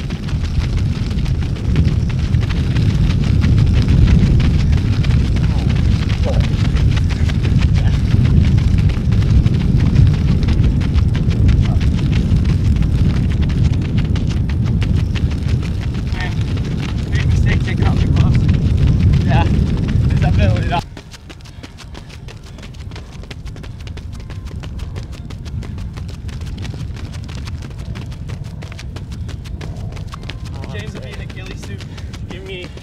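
Heavy wind buffeting on the microphone: an uneven low rumble that cuts off suddenly about two-thirds of the way through, leaving a quieter, steadier outdoor background.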